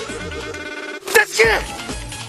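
Music with a loud shouted voice about a second in, its pitch falling.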